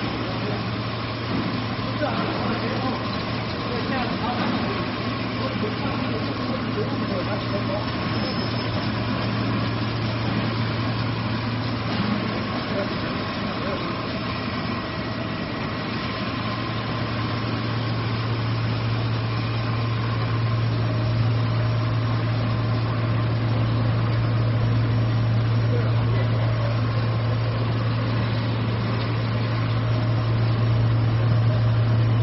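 Stretch film co-extrusion line running: a steady machine hum with a strong low drone under a constant mechanical noise, the drone growing a little stronger in the second half.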